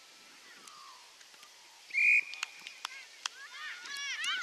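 A short, shrill whistle blast about two seconds in, then a few sharp clicks, and children's voices shouting near the end.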